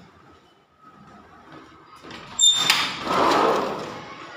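Sliding window sash pushed by hand along its track. It gives a sharp, high squeak about two and a half seconds in, then a scraping rumble of about a second as it slides.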